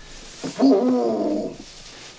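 A single drawn-out vocal cry, about a second long, starting about half a second in. It is made by a person, perhaps with several voices overlapping.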